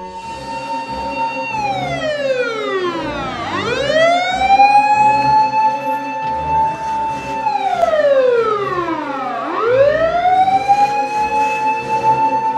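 Emergency-vehicle siren wailing: its pitch holds high, glides down over about two seconds and climbs back up, then does the same again in a slow wail cycle.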